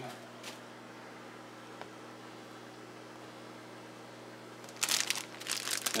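A steady low hum, then from near the end a burst of crinkling from the plastic wrapper of a UniHeat shipping heat pack being handled.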